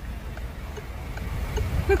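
Low road and engine rumble heard inside a slowly moving car, with a few faint light ticks.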